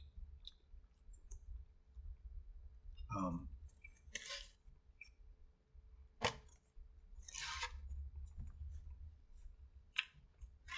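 Close-up eating sounds of a person chewing loaded fries taken off a fork: faint chewing and mouth noises, short rustles, and one sharp click about six seconds in. A brief hum from the eater about three seconds in.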